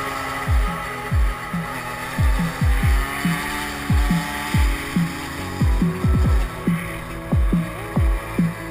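Electronic dance music with a heavy beat, its bass kicks dropping sharply in pitch, over sustained synth notes.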